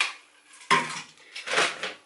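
Clattering knocks of groceries being handled and put aside: a sharp click right at the start, then two louder knocks, one under a second in and one about a second and a half in.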